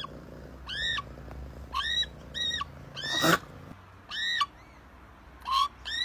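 A cat meowing repeatedly: about six short, high-pitched meows, each rising and then falling in pitch, spread across a few seconds.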